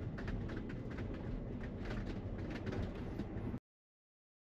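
Steady road and tyre noise inside the cabin of a Tesla Model Y electric car as it drives, with no engine sound. It cuts off suddenly near the end.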